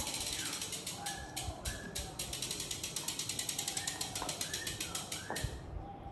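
Rear freehub of a Sava X9.9 carbon road bike ticking rapidly as the wheel rolls and freewheels, a loud ratcheting of the hub's pawls; the clicking stops shortly before the end as the bike comes to rest.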